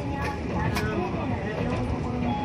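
Toden 7000-series streetcar 7001 running along the track, with a steady low rumble and two sharp clicks under the wheels, one near the start and one a little under a second in. Indistinct voices are heard over the running noise.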